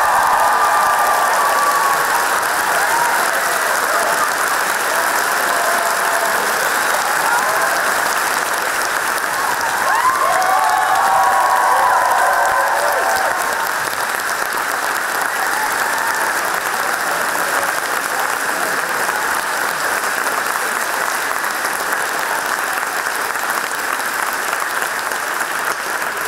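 A large audience applauding, with cheers and whoops rising above the clapping near the start and again about ten seconds in. The applause eases slightly in the second half.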